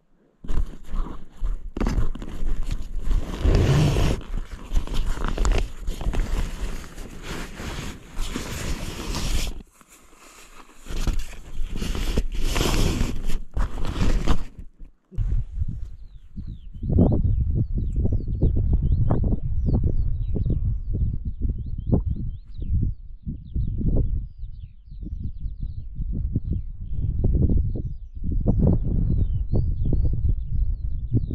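Close, loud rustling and crinkling of nylon tent fabric and gear being handled right at the microphone, cutting off suddenly about 15 seconds in. Then wind buffets the microphone in irregular low gusts, with faint bird chirps above.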